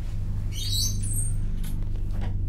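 A low steady drone, with a brief high-pitched squeaking about half a second in that lasts under a second.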